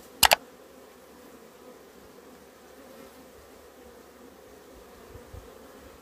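Honey bees buzzing faintly and steadily around the entrances of wooden hives. A sharp double click stands out about a quarter second in.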